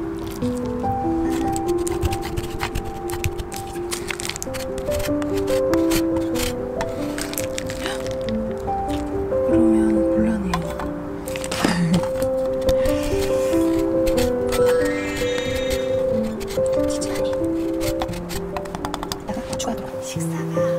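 Background music, a light melody of held notes, with scattered clicks and scrapes running under it.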